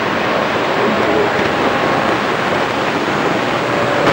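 CB radio receiver on channel 19 putting out a steady rush of static between transmissions, with faint, garbled voices from distant stations buried in it.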